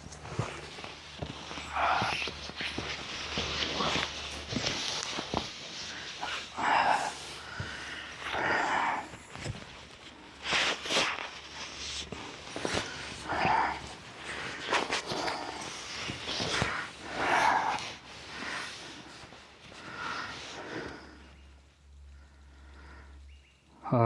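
Hammock and quilt fabric rustling in irregular bursts as a person climbs in, lies down and settles; it dies down near the end.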